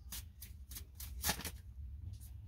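A deck of tarot cards being shuffled by hand: several short swishes of card against card, the loudest about a second and a quarter in.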